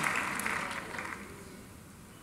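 Congregation applause in a large church auditorium, dying away over the first second or so.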